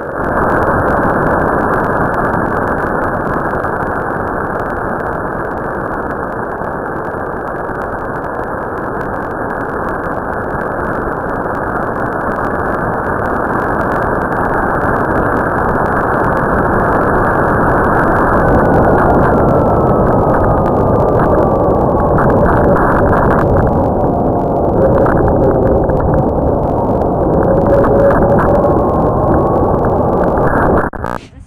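Loud, steady rushing roar picked up by the microphone of an Estes Astrocam riding on a model rocket as it lifts off on a C6-5 motor and climbs: motor thrust and air rushing past the airframe. In the second half a faint falling whistle rises over the roar.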